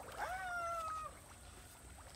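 A single short high-pitched call, rising at its start and then held with a slight fall, lasting under a second: an animal-like cry.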